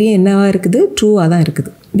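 Mostly speech: a woman's voice explaining, with a few sharp clicks among the words. The voice stops shortly before the end.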